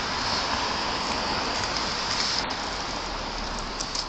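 Steady hiss of street traffic, car tyres on wet, slushy pavement.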